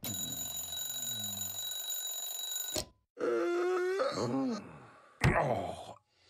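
Mechanical twin-bell alarm clock ringing steadily for nearly three seconds, then cut off abruptly. A drawn-out groan from a cartoon character follows, and a sharp thump comes near the end.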